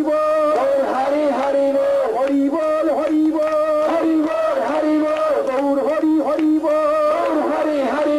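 Devotional kirtan chanting: a sung melody in long held notes that step up and down between a few pitches, with musical accompaniment.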